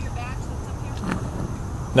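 Steady low rumble of a motor vehicle, with faint voices in the background.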